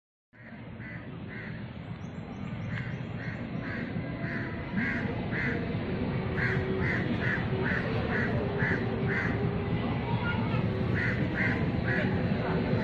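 A bird calling over and over in short, clipped notes, two or three a second, against a steady outdoor background. The sound fades in just after a brief dropout at the start.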